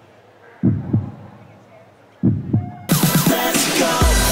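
Heartbeat sound effect: two slow double thumps, lub-dub, about a second and a half apart, over a faint background murmur. Loud electronic dance music cuts in suddenly about three seconds in.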